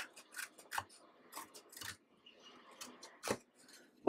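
Small yellow-handled Cutter Bee craft scissors snipping a sticker sheet, trimming the excess close to the sticker's edge: several faint, short snips spread through, the sharpest about three and a quarter seconds in.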